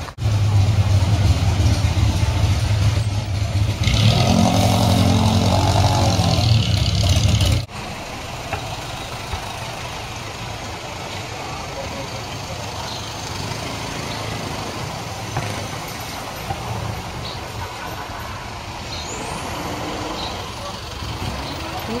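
A motor vehicle's engine running close by with a steady low hum, which cuts off abruptly a little under eight seconds in, leaving quieter street traffic noise.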